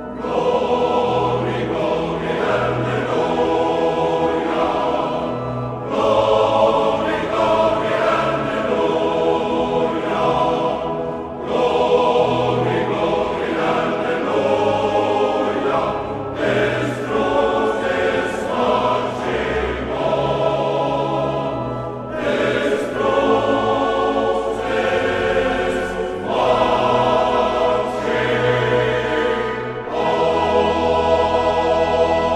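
A choir singing, phrase after phrase, with short breaks between phrases every five seconds or so.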